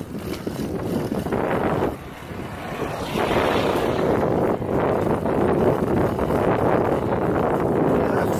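Wind buffeting the microphone in a steady rush. It dips briefly about two seconds in and grows louder from about three seconds in.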